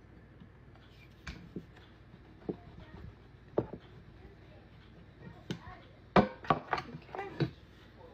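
Wooden rolling pin rolling pie dough on a countertop, giving scattered knocks and clicks, then a quick run of louder clacks and clinks near the end.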